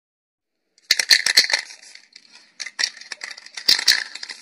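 A hard rattle shaken in quick bursts of sharp clicks, starting about a second in and loudest at the start and again near the end.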